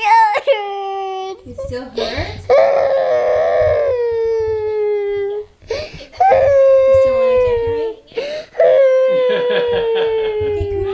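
A young child crying hard in four long, loud cries, each held for one to three seconds with the pitch sliding slowly down, with short breaks between them.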